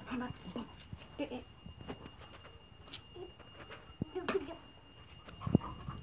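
A toddler's short babbled syllables ("da da") with a few sharp knocks of a wooden stick striking the concrete ground, the loudest about five and a half seconds in.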